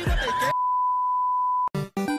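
A steady, single-pitched electronic beep held for about a second and a half, starting just as the rap music cuts off. Short, sharp musical stabs begin near the end.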